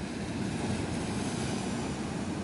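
Steady, even rushing noise of the sea at a rocky shore at low tide.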